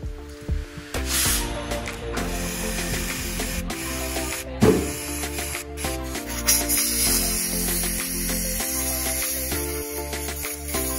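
Background music over the hiss of aerosol brake cleaner spraying into a car's throttle body, with one sharp click about four and a half seconds in.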